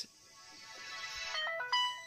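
Acer beTouch E130 phone's startup sound playing from its speaker as it boots: an electronic swell that grows steadily louder, then a short run of notes stepping in pitch near the end.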